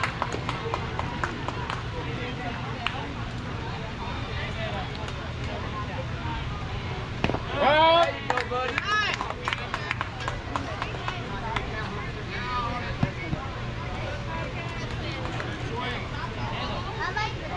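Voices of spectators and players talking and calling out around a baseball field, with one louder shout about halfway through as the batter swings, over a steady low hum.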